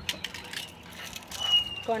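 Quiet outdoor ambience with a few soft clicks and one short, high, slightly falling bird chirp about a second and a half in.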